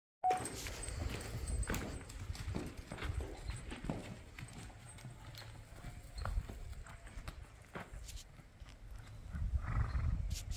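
Horse's hooves clopping at a walk on a dirt path, irregular soft steps, over a low rumble.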